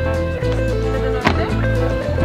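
Background music with held notes over a bass line, and one sharp click a little past the middle.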